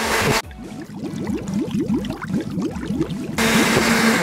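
Countertop blender grinding blanched almonds with water into almond milk. It runs at a full-speed whirr at the start and again from near the end, with a lower gurgling churn of the liquid in between.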